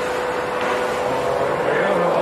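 Steady machinery hum in a workshop: one constant tone held over an even mechanical noise, unchanging throughout.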